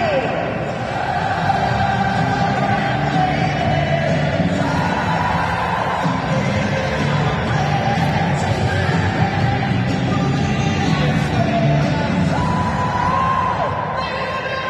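Music played over a stadium public-address system, with the crowd singing along.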